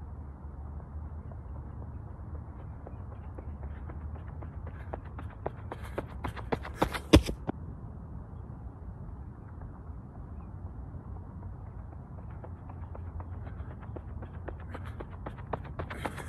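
Running footsteps on a dirt path: a sprinter's footfalls grow louder, pass close by with the loudest strikes about seven seconds in, and quickly fade. Near the end, another sprint's footfalls approach and grow louder.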